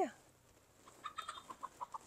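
A bird giving a quick run of short calls, about eight in a second, starting about a second in.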